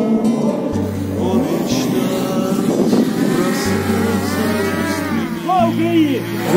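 Quadcopter drone's motors whining, the pitch repeatedly rising and falling as it manoeuvres, with music underneath.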